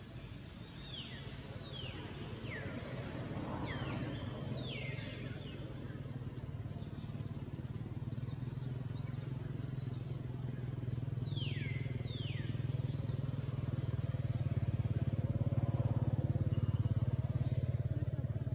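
A motor engine running steadily, slowly getting louder. Over it come short, high calls falling in pitch: several in the first few seconds and a pair about two-thirds of the way through.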